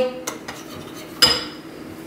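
Kitchen utensils and dishes clinking: one sharp clink about a second in that rings briefly, with a light tick before it, over a faint steady hum.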